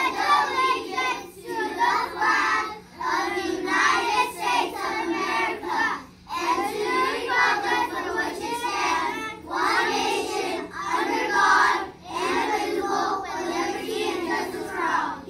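A class of young children reciting the Pledge of Allegiance together in unison, phrase by phrase with short pauses between.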